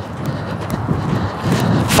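Quick, light footfalls of a person hopping from foot to foot on a clay tennis court, tapping a tennis ball with the soles of the trainers, over a rushing noise that grows louder.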